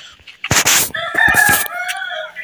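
A rooster crowing once: a long, wavering call that starts about a second in. Just before it there is a loud burst of rustling noise.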